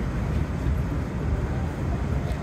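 Steady low rumble of ocean surf breaking, with wind on the microphone.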